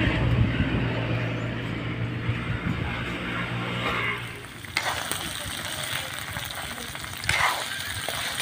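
A steady engine drone for the first half, then, from a sudden change, fiddler crabs sautéing in oil in a wok: an even high sizzle, with a few scrapes of a metal spatula stirring them near the end.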